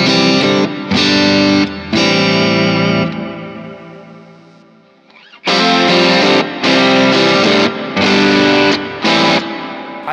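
Electric guitar through a Crowther Hot Cake overdrive pedal into a Vox AC30-style amp voice, playing strummed chords with a light crunch. It plays two phrases of four chords about a second apart; the first ends on a chord left to ring out for about three seconds. The drive is transparent: the AC30 amp character is not lost.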